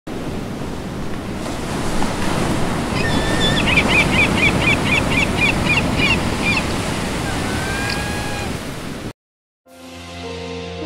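Ocean surf washing steadily, with a run of short, high chirps repeating about three times a second in the middle and a few rising calls after them. The surf cuts off suddenly near the end, and music begins.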